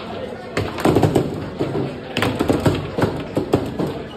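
Table football in play: a rapid, irregular series of sharp knocks and clacks as the ball is struck by the plastic players and the rods bang against the table, starting about half a second in. Voices of people around the table chatter underneath.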